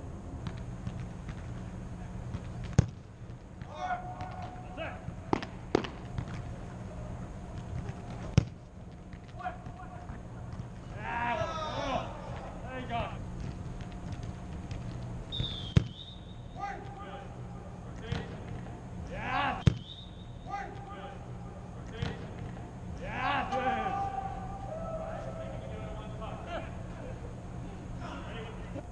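Soccer balls struck hard with the instep, about five sharp kicks spaced several seconds apart, echoing in a large indoor hall. Voices call out between the kicks over a steady low hum.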